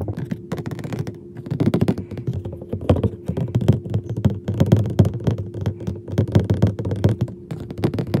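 Scratch-off lottery ticket being scratched: a quick, uneven run of short scraping strokes on the card's coating, close to the microphone.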